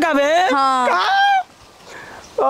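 A person's high, nasal, drawn-out whining cry, wavering up and down in pitch and breaking off about a second and a half in.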